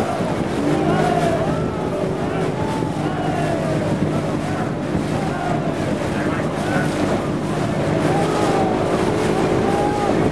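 Small boat's outboard motor running steadily at cruising speed, with water and wind noise around it.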